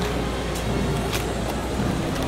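Outdoor street noise: a steady low rumble under a general hubbub, with a couple of sharp clicks about half a second and a second in.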